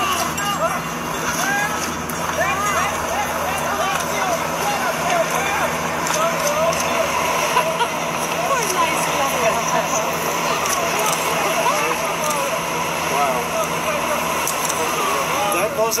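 Indistinct voices talking throughout, no words clear, over a steady hum and hiss.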